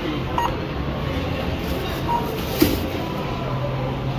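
Self-checkout kiosk's barcode scanner giving short electronic beeps, twice, as a product is passed under it and read. A steady low background hum runs underneath.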